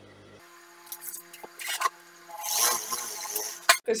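Handling noise at a sewing machine. A few light clicks come first, then about a second of fabric rustling as the cloth is moved, over a faint steady hum.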